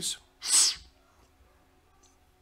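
A short, loud burst of breath from the presenter at the microphone, about half a second in and sharp like a sneeze or forceful exhale.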